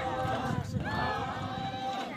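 A group of voices singing a Naga folk chant in unison, on long held notes that break and start again about halfway through. The footfalls of a dancing line sound underneath.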